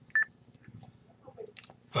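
A single short electronic beep from an Icom ID-51A D-Star handheld just after the incoming transmission drops, the radio's signal that the other station has stopped sending; a faint click follows near the end.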